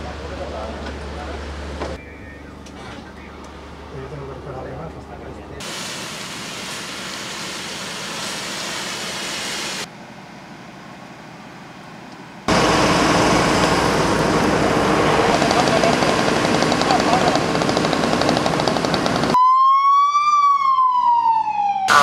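Several short stretches of indistinct outdoor sound, then a loud steady rushing noise for about seven seconds. Near the end comes a siren wailing once, rising and then falling in pitch.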